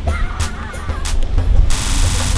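A child's brief high-pitched call in the first second, followed about three-quarters of the way through by the hiss of breaking surf washing up the sand, with a heavy low rumble underneath.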